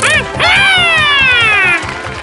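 A cartoon monkey's voiced cry over background music: a short up-and-down chirp, then a long loud call that slides steadily down in pitch for over a second.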